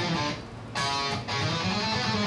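Schecter Hellraiser C1 electric guitar in drop D playing the minor-scale pattern one note at a time, shifted down one fret to C-sharp minor; separate plucked notes follow one another with a short gap about half a second in.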